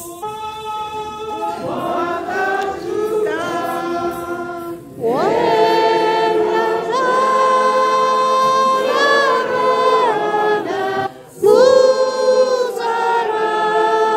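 A group of voices singing a church song together without instruments, in long held phrases. Softer at first, louder from about five seconds in, with a brief break near eleven seconds.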